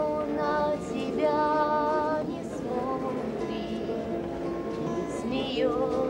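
A female voice singing a slow song to instrumental accompaniment, holding long notes.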